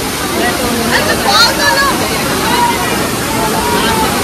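Waterfall pouring into a pool, a loud, steady rush of water, with a crowd of bathers chattering and shouting over it; one high shout about a second and a half in.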